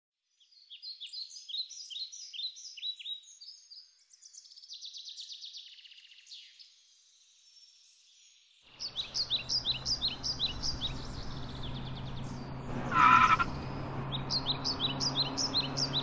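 Small songbirds chirping in quick repeated high, falling notes, then a buzzy trill. From about nine seconds in, a steady outdoor background with a low hum lies beneath more chirping, and a brief louder tone sounds about thirteen seconds in.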